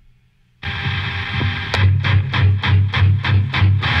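Live rock band starting a song: after a brief hush, electric guitar and bass come in suddenly about half a second in, and from just under two seconds in, sharp hits with heavy bass beats pulse about four times a second, building to the full band.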